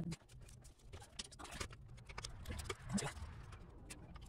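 Irregular small clicks and rattles of a plastic wiring-harness clip and its bracket being handled under a pickup's rear axle, as it is pushed and worked by hand to snap it back into place.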